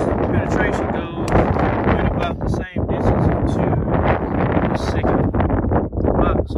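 Wind buffeting the microphone in a steady rough rumble, with a voice talking indistinctly over it.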